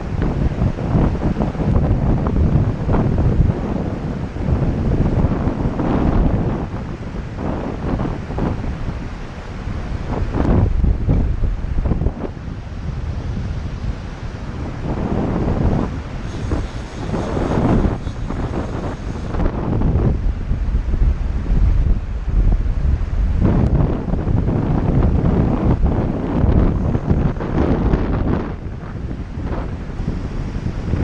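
Strong, gusty wind buffeting the microphone, rising and falling every few seconds.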